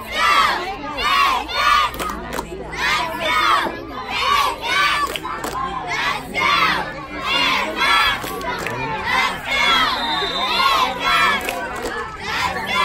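A group of children shouting a chant together in a steady rhythm, high voices rising and falling on each call, a bit more than one call a second.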